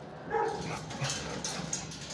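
Dog bark echoing in a shelter kennel block: one short bark about a third of a second in, followed by several sharp clicks.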